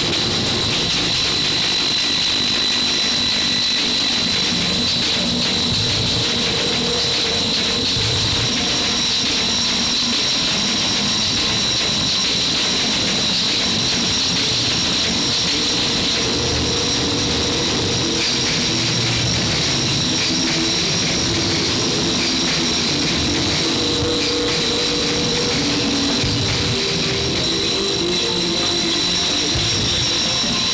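Experimental noise music: a dense, unbroken wall of hiss with two steady high whines and shifting lower drones underneath, holding one constant loudness.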